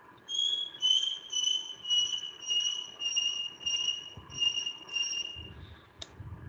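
A run of about nine short, high-pitched beeps or chirps, roughly two a second, their pitch easing slightly downward and stopping shortly before the end.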